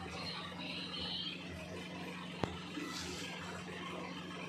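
A steady low hum under faint background noise, with one sharp click about two and a half seconds in.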